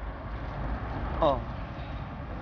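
Steady low rumble of city street traffic, with a short falling "ah" from a voice about a second in.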